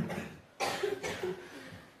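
A short cough close to the microphone, starting sharply about half a second in and trailing off within a second.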